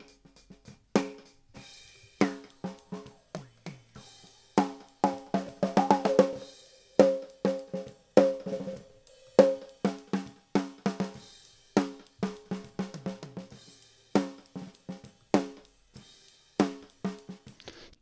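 Snare drum heard through its top microphone, playing a steady groove with a ringy, pitched overtone hanging after each hit. In the middle of the passage a narrow EQ boost makes the ring louder and longer. The ring is then cut back at about 530 Hz.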